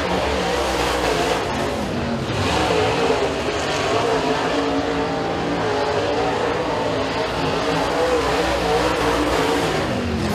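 Dirt Super Late Model race car's V8 engine running at full throttle around the oval on a qualifying lap, a loud continuous engine note whose pitch wavers slightly.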